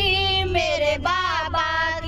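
A woman singing a Haryanvi devotional song (bhajan) into a handheld microphone, holding long wavering notes, over a steady low hum.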